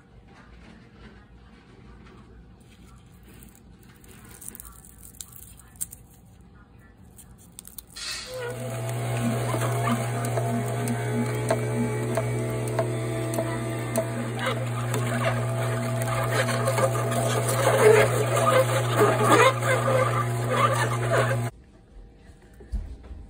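Horizontal masticating juicer switched on about eight seconds in: a steady low motor hum with crackling and crunching as the auger crushes produce, cutting off suddenly shortly before the end. Quiet before it starts.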